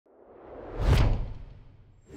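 Whoosh sound effect for a logo animation: it swells from nothing, peaks with a deep low hit about a second in, then dies away.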